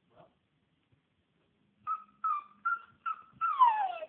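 Dog whining: four short, high whines about half a second apart starting about two seconds in, then a longer cry that falls in pitch. It is the distressed vocalising of a dog left home alone.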